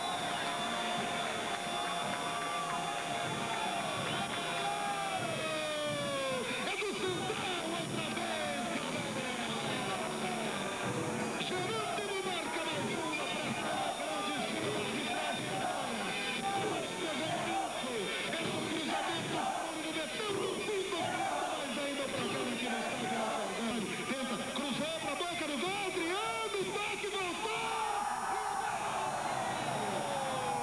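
Football broadcast sound over a goal celebration: a long held note slides down in pitch about five seconds in, then many overlapping voices and music mix with crowd noise.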